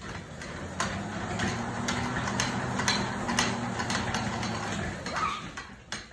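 Elliptical cross trainer being pedalled: a steady low hum from its flywheel, with a knock from the machine about twice a second, in time with the strides. The hum builds about a second in and dies away near the end.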